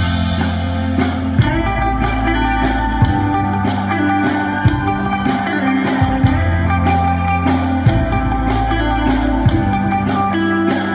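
Live rock band playing an instrumental passage: electric guitars over a bass line, with a steady drum beat.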